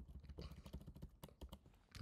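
Computer keyboard typing: a run of quick, irregular, faint key clicks.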